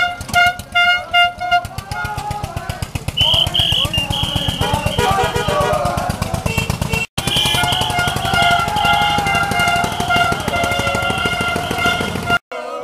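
Toy trumpets blown in short repeated toots, then in longer held notes, over the steady chugging of a tractor engine, with voices shouting.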